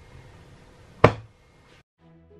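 A single sharp knock about a second in: a freshly unmoulded round cake of soap set down on a hard tabletop.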